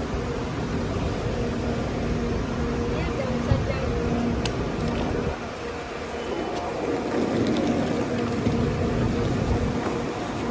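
Roadside traffic at a busy curb: the steady drone of an idling city transit bus's engine, with cars moving past and a vehicle swelling past about seven seconds in.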